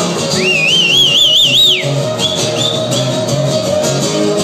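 A live band playing with electric guitars, a held note ringing over a steady beat. About half a second in, a shrill warbling whistle rises over the music, wavers for about a second and a half, then falls away.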